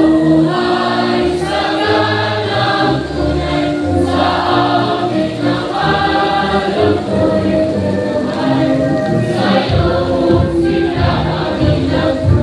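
A large group singing a hymn together in chorus, with sustained held notes over low bass notes: an institutional hymn sung by the graduation assembly.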